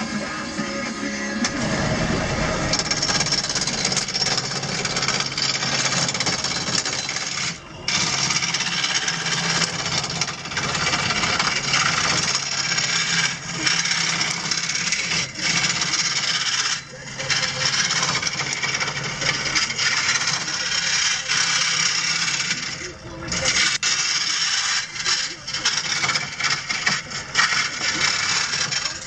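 A gouge cutting a spinning bat blank on a wood lathe: a continuous rough shaving noise over a low motor hum, broken by a few brief pauses as the tool comes off the wood.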